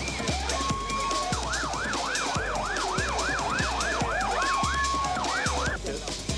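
Siren in a fast rising-and-falling yelp, about three cycles a second, with short steady held notes before and partway through, over music with a steady electronic beat.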